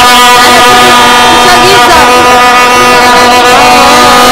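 Many plastic vuvuzelas blowing at once in a football crowd, a dense chorus of steady held horn notes, with crowd voices shouting over it.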